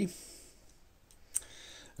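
A single short, sharp click a little after the middle, over quiet room tone.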